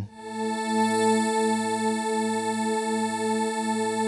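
Synth pad from the Vital wavetable synth holding a chord, swelling in over about a second on its slow attack and then sustaining steadily. Detuned unison voices give it a gentle shimmer, with a faint airy hiss on top from the granular wavetable.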